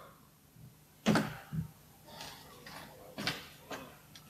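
Hard objects handled on a table: several short knocks and clatters, the loudest about a second in and again just past three seconds.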